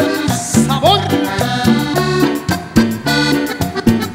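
Live band playing upbeat tropical Latin music with a steady percussive beat; a held melodic note ends at the start, followed by a phrase that slides up in pitch about half a second in.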